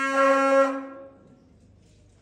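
Tibetan monastic wind instruments, ritual horns, sounding a held note that ends within the first second and dies away, leaving quiet hall ambience.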